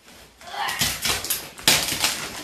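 Gift wrapping paper and brown packing tape being pulled and torn off a cardboard box: crackling paper rustle with sharp rips, the loudest about three-quarters of the way through.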